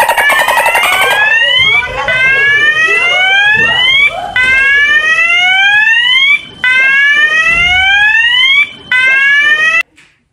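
A staged fire alarm: a loud whooping tone that sweeps upward, repeating about every two seconds, and cuts off suddenly just before the end.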